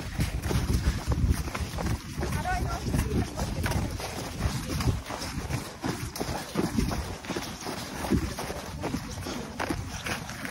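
Footsteps hurrying through snow, crunching a little under a second apart, under wind rumbling on the microphone.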